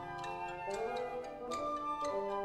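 Marimba played softly with mallets: sparse single struck notes, each with a sharp attack and a short ringing decay, in a quiet passage.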